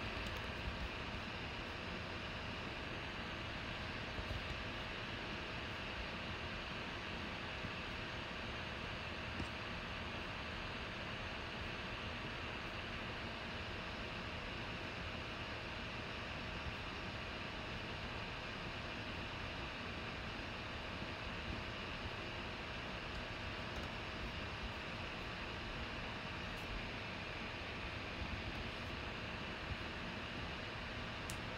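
Steady room noise: an even hiss with a faint, constant hum, broken only by a few faint clicks.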